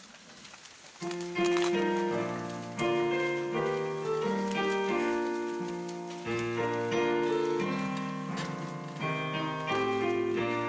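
Digital stage piano playing the introduction to a hymn. Slow, sustained chords start about a second in, each ringing and fading before the next.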